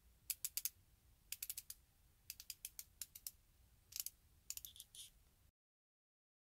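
Quick clusters of small, faint plastic clicks from the twist-up base of a pen-style liquid lipstick being turned over and over to push the product up to the tip; the clicking stops abruptly near the end.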